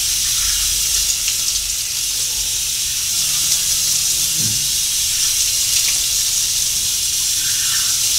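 Bathroom sink tap running steadily while face cleanser is rinsed off under it.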